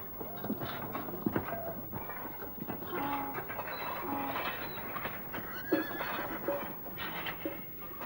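Horses' hooves clopping with scattered knocks and short calls through a busy camp background.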